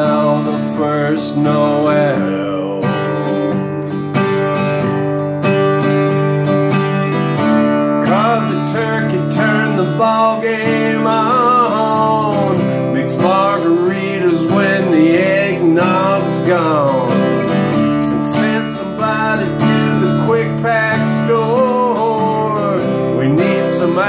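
Acoustic guitar strummed steadily in a country rhythm, with a man singing over it.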